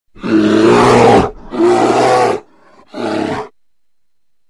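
Bear roar sound effect: three loud roars in a row, the first the longest and the third a short one.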